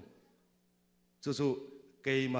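A man speaking into a handheld microphone over a PA: a pause of about a second, then a short phrase of speech.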